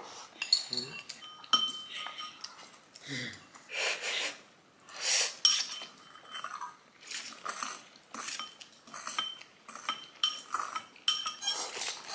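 Chopsticks and a fork clinking and scraping against ceramic bowls during a noodle meal, many short clinks, some with a brief ring, mixed with noodles being slurped.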